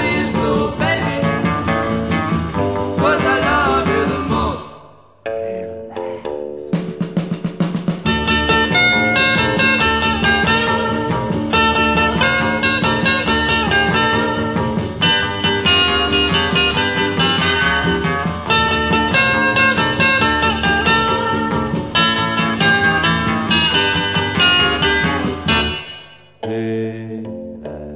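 Early-1960s rock-and-roll band recording with electric guitars and drum kit. One track fades out about five seconds in. After a brief gap the next track starts with a few rhythmic strokes, then the full band comes in, and the sound drops away again right at the end.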